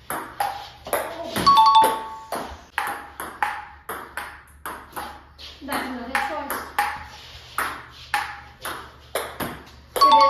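Ping pong ball clicking back and forth off paddles and a JOOLA table during a rally, about two or three hits a second. A brief chime sounds about a second and a half in.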